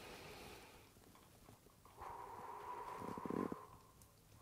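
Faint human breathing: a soft breath in, a pause, then a slow breath out lasting about a second and a half, with a faint steady whistle-like tone. The out-breath is used to pull a neck stretch a little further.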